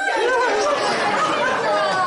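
Several voices talking over one another in overlapping chatter.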